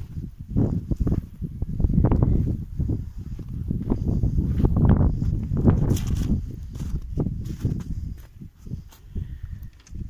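Footsteps in snow with low, uneven rumbling and buffeting on the phone's microphone as the person walks.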